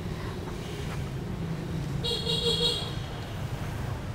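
A vehicle horn sounds once, briefly, about two seconds in, over a steady low rumble of street traffic.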